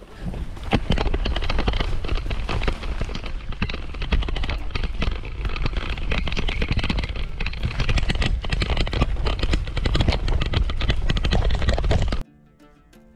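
Kross Esker 6.0 gravel bike ridden over bumpy grass: a steady rumble of wind on the microphone with dense, irregular rattling and knocking from the bike and its tyres on the rough ground.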